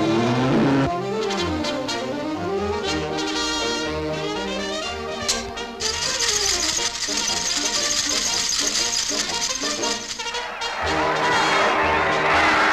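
Brass-led cartoon orchestral score, with trombones and trumpets playing sliding up-and-down phrases. About halfway a high steady hiss joins the music, and near the end crowd noise comes in.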